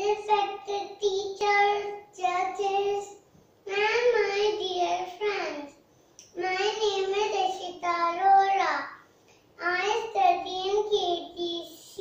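A young girl singing in a high voice, a devotional-sounding verse in about five phrases with short pauses for breath between them.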